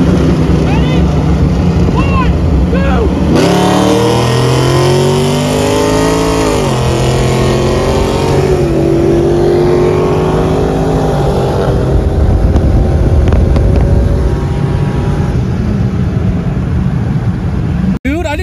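Supercharged V8 engines at wide-open throttle in a side-by-side roll race, heard from inside one of the cars. The engine note climbs in pitch from about three seconds in, drops sharply at an upshift around seven seconds, and climbs again before road and wind noise take over in the later seconds.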